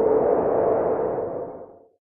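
An electronic intro sound effect: a steady hum under a rushing wash of noise, fading away over the second half and gone just before the end.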